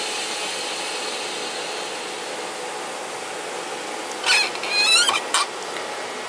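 Plasma Etch O2 plasma cleaner venting: a steady hiss of air flowing back into its vacuum chamber, easing slowly. About four seconds in come a few short, sharp squeaks as the chamber door is pulled open.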